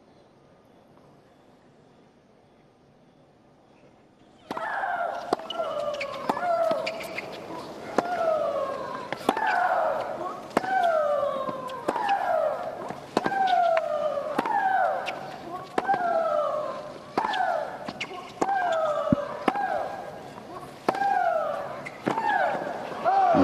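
A hushed tennis stadium, then from about four seconds in a baseline rally between two women players. Racket strikes on the ball come a little more than once a second, each met by a loud shriek from the hitter that falls in pitch. The two players shriek in turn.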